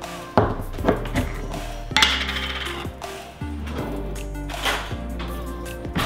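A few sharp clinks of a metal fork against a glass jar and the ceramic crock pot as pepperoncini peppers are fished out and dropped in, over background music.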